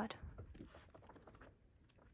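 Faint, light paper ticks and rustles as the pages of a photo book are flipped and fanned by hand.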